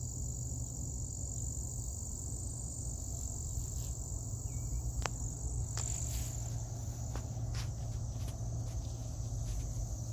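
Steady high-pitched trilling of crickets in an autumn prairie, unbroken throughout, over a low rumble. A few faint clicks come in the second half.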